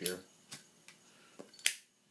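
A few faint clicks, then one sharp, louder click near the end.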